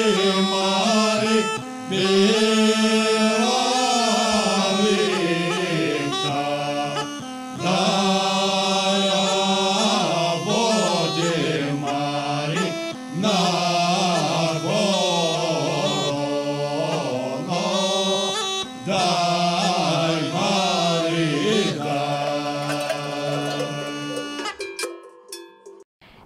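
A group of men singing a Bulgarian Rhodope folk song unaccompanied, a steady held low drone note under a moving melody line. The singing stops near the end.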